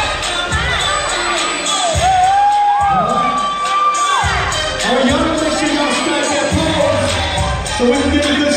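An audience cheering and shouting over loud dance music with a heavy bass beat.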